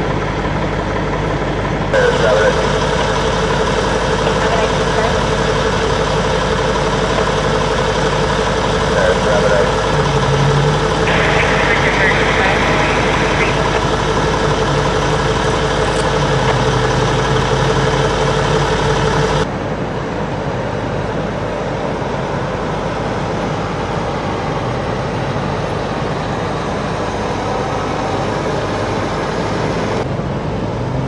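Fire engine idling, a steady engine hum with a constant whine over it. The sound changes abruptly about two seconds in, and again about two-thirds of the way through, after which the whine is gone and only a lower rumble is left.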